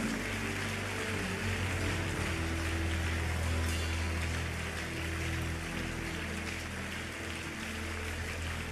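Soft background music of long held chords over a steady low bass note, with a faint even hiss beneath.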